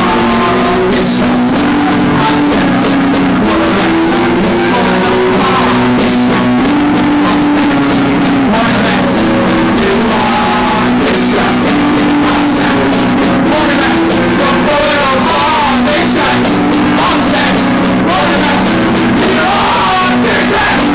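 Loud live rock band playing, with a singer on vocals over guitar and drums.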